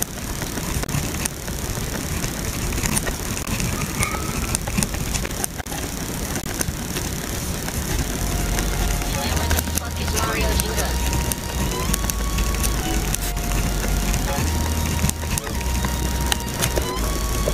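Pen scratching across paper as it writes, a fine hiss with small clicks. About halfway in, music joins: held notes stepping between a few pitches over a deep bass.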